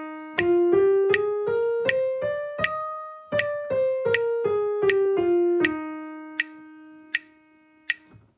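A piano-toned keyboard plays the E-flat major concert scale as even, detached eighth notes, up one octave from low E-flat and back down. The last E-flat is held and fades away. A metronome ticks steadily at 80 beats per minute underneath.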